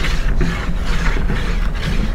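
Spools of hollow-core Spectra braided fishing line turning on a line winder, with the joined line winding from one spool onto the other. A steady mechanical whirr that pulses faintly a few times a second.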